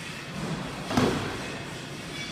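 A single thud about a second in: feet landing a box jump on a wooden plyometric box.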